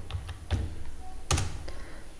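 Computer keyboard being typed on: a few separate keystrokes, the loudest a little over a second in.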